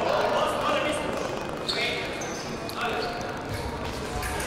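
Indistinct voices in a large, echoing sports hall, with a few footfalls and short shoe squeaks on the fencing piste.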